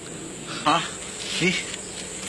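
Steady high insect chirring in the background, with two short voice sounds about two-thirds of a second and a second and a half in.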